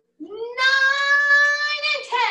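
A long, high-pitched wail that rises in pitch at the start and is then held steady for about a second and a half.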